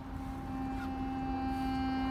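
Marching band holding one long sustained note that slowly swells in loudness.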